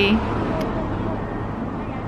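Steady road traffic noise: a continuous low hum of vehicles on a street.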